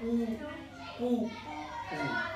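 Speech only: a higher-pitched voice saying two short words, at the start and again about a second in.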